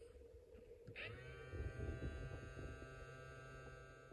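A click about a second in, then a faint steady buzzing tone with many overtones from a Snap Circuits SCR noise circuit as it is switched back on to reset it.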